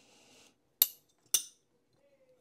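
Two sharp metallic clicks about half a second apart as the steel blade and titanium handle scale of a disassembled folding knife are handled and fitted together at the pivot.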